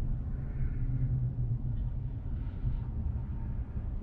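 Steady low rumble of a vehicle heard from inside its cabin.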